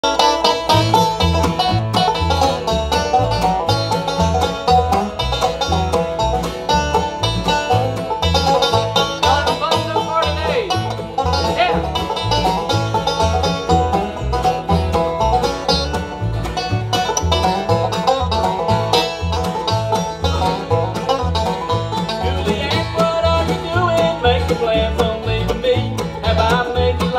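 Live bluegrass band playing an instrumental opening: banjo, mandolin and acoustic guitar picking over an upright bass that keeps a steady beat.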